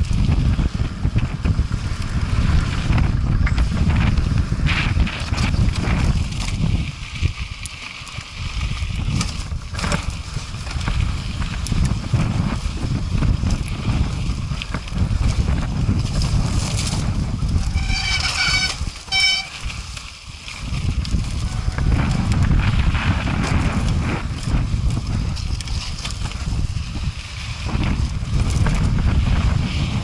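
Wind buffeting a helmet-mounted action camera's microphone while a mountain bike's tyres run over loose gravel and rock, with frequent knocks and rattles from the bike. Two short, high squeals come a little past halfway.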